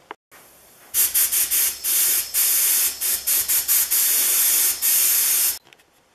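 Sandblaster nozzle spraying abrasive at low pressure onto a nickel-plated part, a loud hiss in a run of short bursts with brief gaps. It starts about a second in and cuts off near the end.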